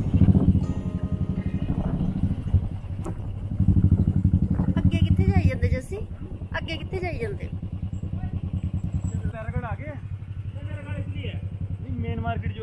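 Motorcycle engine running as the bike rides along, heard close up from the back seat, with a steady pulsing note that gets louder near the start and again from about four to six seconds in. A voice comes in over it in the second half.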